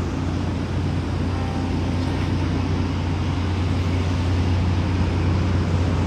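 Steady low outdoor background rumble with a faint hiss, unchanging and without distinct events.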